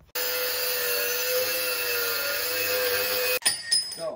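Angle grinder cutting through flat steel bar: a steady high motor whine over the hiss of the disc grinding metal. It breaks off abruptly about three and a half seconds in, followed by a few short, quieter sounds.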